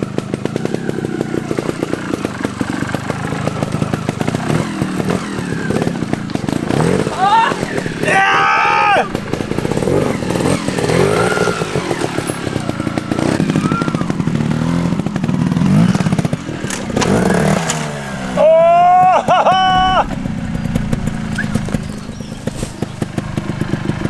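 Trials motorcycle engine running and blipped over rocky woodland ground, its note rising and falling. Short voice calls come in about a third of the way in and again near the end.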